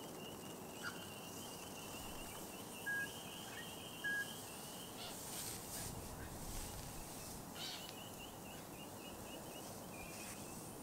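Faint outdoor ambience: a steady high-pitched trill runs throughout, and two short, clear chirps come about a second apart near the middle.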